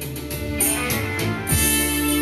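Karaoke backing track playing from a TV: guitar-led instrumental music.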